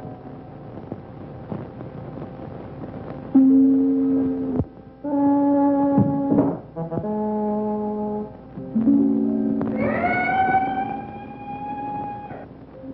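Film score music of long held low notes that sound like brass, stepping to a new pitch every second or so. About ten seconds in, a note slides sharply upward and is held.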